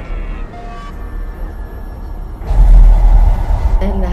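Horror-trailer sound design: a low rumbling drone with faint thin high tones, then about two and a half seconds in a sudden loud surge of hissing noise over a deep rumble that carries on.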